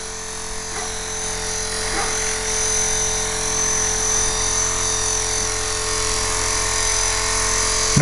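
Esky Honeybee Belt CP electric RC helicopter hovering: a steady high whine from the electric motor and drivetrain over the whir of the rotor blades, growing a little louder over the first few seconds.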